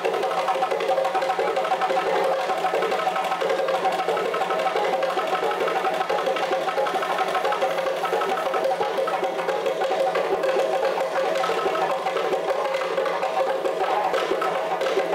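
Live West African drum ensemble, djembe and stick-beaten barrel drums, playing a fast, unbroken rhythm.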